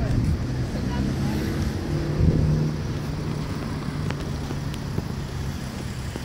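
Street traffic: a vehicle engine's low steady hum, loudest about two seconds in, over wind rumbling on the microphone.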